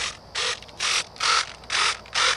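Small RC hobby servos in an X-31 park jet model whirring in short bursts as they drive the elevons and the coupled pitch control vane back and forth, about five quick movements in two seconds.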